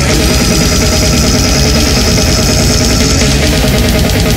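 Brutal death metal played full-out: heavily distorted guitars over fast, dense drumming and constant cymbal wash, with no let-up.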